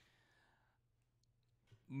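Near silence: a faint click at the start, then a soft breath, and a man's voice begins right at the end.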